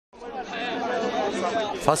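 Crowd of demonstrators chattering, several voices overlapping, fading in over the first half second.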